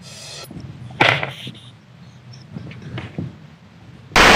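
Rustling and short knocks of handling, typical of a microphone being fitted on a performer. The loudest is a sharp knock about a second in, with a few fainter ones near the end.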